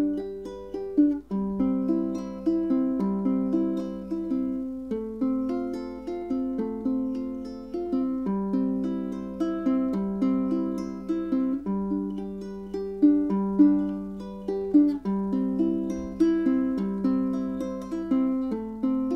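Ukulele strung with Fremont Blackline strings, fingerpicked: a steady run of single plucked notes and arpeggios, each note ringing briefly and decaying.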